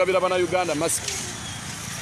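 A man talking for about the first second, then steady street traffic noise from motor vehicles on the road.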